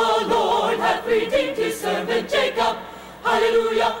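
Choir singing. The voices thin out and drop briefly about three seconds in, then come back in together and loud.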